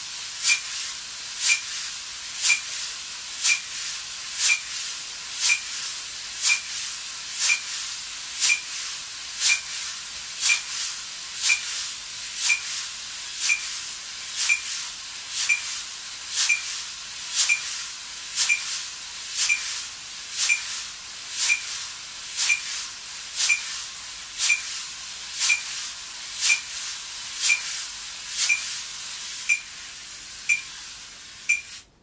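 Wire brushes swept in continuous circles on a coated drum head, a steady swish that swells and eases with each beat as pressure is put on the brushes. A metronome clicks through it once a second, at 60 bpm.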